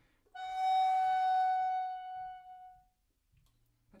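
Helder tenor recorder playing one long high note that starts strong with some breath noise and fades away in a smooth decrescendo, dying out about three seconds in.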